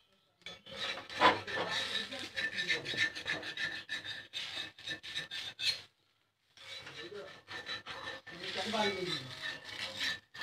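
A metal spatula scrapes and rubs over a flatbread on a stone griddle in rough, repeated strokes. The sound cuts out briefly about six seconds in.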